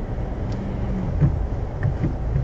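Steady low engine and tyre rumble inside a car creeping along in second gear at about 20 km/h, as picked up by a dashboard camera's microphone.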